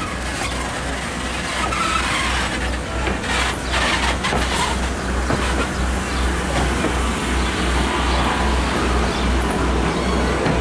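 Railroad passenger coaches rolling slowly past at close range, their wheels rumbling on the rails. There is a steady low pulse about three times a second and a few sharp clicks partway through.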